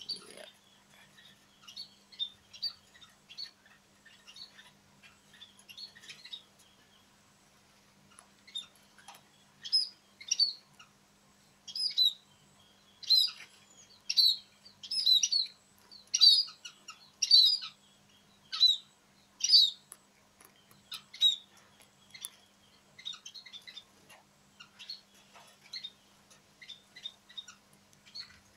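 Munias calling: short, high chirps, scattered at first, then a run of louder chirps, often in pairs, about once a second through the middle, thinning out toward the end.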